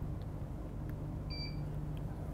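A single short electronic beep about one and a half seconds in, over a faint steady low hum: a Profoto studio flash signalling it is switched on and ready to fire.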